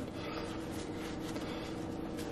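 Faint rustling of a damp paper towel being peeled back from a microwaved sweet potato, over a steady low room hum.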